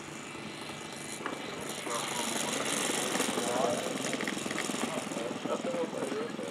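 Radio-controlled P-51 Mustang model's O.S. 95 engine running as the plane comes in to land, growing louder about halfway through as it nears.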